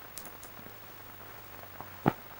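Background noise of an old film soundtrack: a steady hiss with a low hum beneath it and a few faint crackles in the first half-second.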